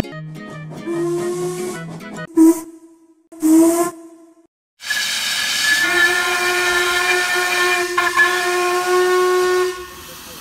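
Several short steam-whistle toots over a chugging rhythm from a cartoon toy train. Then, about five seconds in, the steam whistle of LMS Princess Coronation class locomotive 6233 Duchess of Sutherland gives one long, steady blast over hissing steam and stops shortly before the end.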